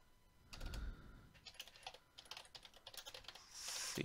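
Faint typing on a computer keyboard: an irregular run of key clicks.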